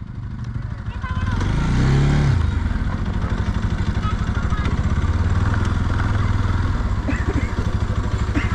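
Motorcycle engine running at low speed on a dirt road, revving up and easing off briefly about two seconds in, then running steadily.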